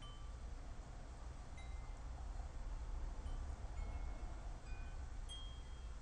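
Faint chime tones: single notes at several different pitches ringing now and then, over a low steady rumble.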